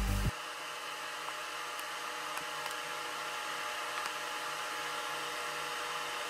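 Anycubic i3 Mega 3D printer running at the start of a print, a steady whir of its fans with a faint, even motor whine over it.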